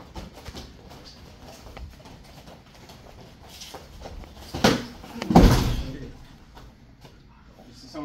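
MMA sparring in gloves on floor mats: two loud thumps a little past the middle, under a second apart, the second heavier and deeper. These are strikes landing or a body hitting the mat.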